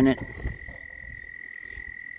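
A steady, high-pitched animal call, one unchanging tone with no breaks, with the end of a spoken word at the very start.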